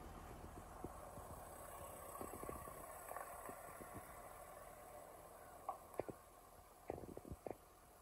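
Faint soft crunching and scraping of damp sand as a small child digs into a sand pile with his hands, with a few sharper light taps in the second half.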